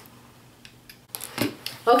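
Quiet room with a few faint clicks. About a second in the sound changes abruptly to short clicks and brief handling and rustling noises.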